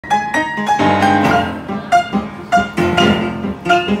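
Upright piano played four hands, improvised, with struck notes and chords coming several times a second and ringing on between them.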